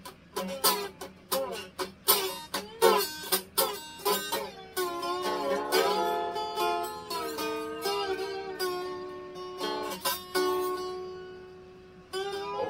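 Ukulele strummed in quick, rhythmic chords for the first four seconds or so, then fewer strums that fade away near the end.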